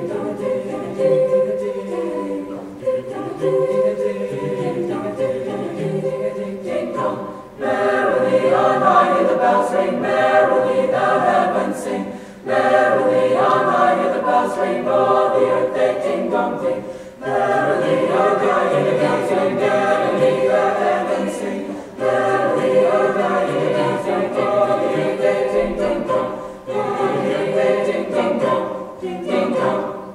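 Mixed high school choir singing in harmony, in phrases of about five seconds, each followed by a short break for breath.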